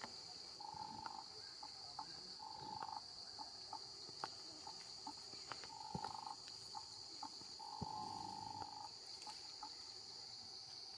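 A steady, high-pitched drone of insects with no break. Four lower, flat buzzing calls of about a second each sit over it, with scattered light ticks and rustles.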